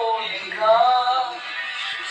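Music with a singing voice, drawing out a held, wavering note in the first half.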